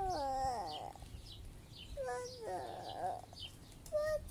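An animal calling: long cries that slide down in pitch, one just after the start and another about two seconds in, with a third beginning at the end. Small birds chirp behind them.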